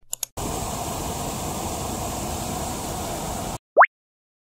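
Two quick clicks as the speaker button is tapped, then the airship sound effect: a steady rushing noise that cuts off suddenly after about three seconds. A short rising whistle follows near the end.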